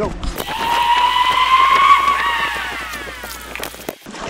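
A man's long high-pitched vocal 'woo', held and rising slowly, then bending and gliding down before it ends, with light knocks from gear being handled.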